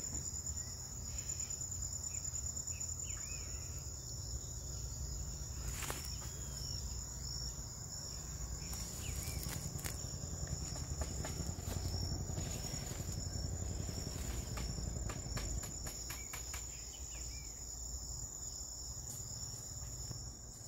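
A steady high-pitched insect trill running throughout, over a low rumble, with a few scattered clicks.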